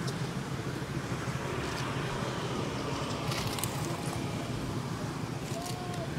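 Quiet outdoor background noise with a steady low rumble, and a few faint clicks and rustles about one and a half and three and a half seconds in.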